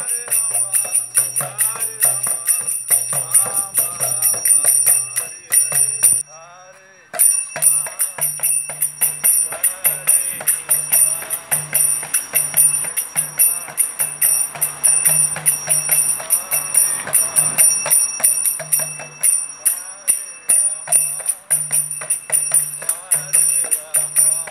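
Street kirtan: small brass hand cymbals (karatalas) struck in a fast steady rhythm and ringing, over a mridanga drum and chanting voices. The sound cuts out for about a second around six seconds in, then the cymbals and drum carry on.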